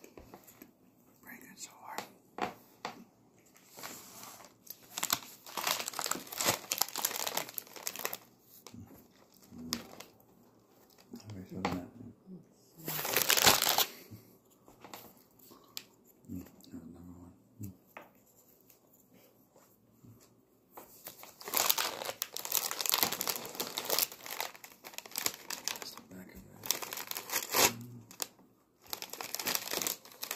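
Plastic cookie packaging being crinkled and handled in irregular bursts. One loud burst comes near the middle, and a longer stretch of crinkling comes in the last third.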